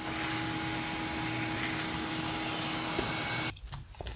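Vacuum cleaner running with its hose held to a dryer's outside vent, sucking lint from the clogged exhaust duct as a steady rushing hum. The sound drops off sharply about three and a half seconds in.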